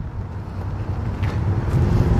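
Low rumble of a car on the nearby road, growing steadily louder as it approaches.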